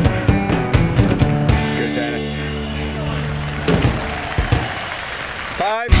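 Rock music with drums and guitar; the drums drop out after about a second and a half, leaving held chords. Near the end the music cuts off briefly and a louder, heavier rock track begins.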